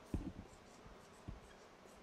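Dry-erase marker writing on a whiteboard: a few short, faint strokes and taps of the marker tip, a cluster at the start and another just past halfway.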